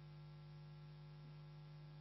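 Near silence with a faint, steady electrical hum.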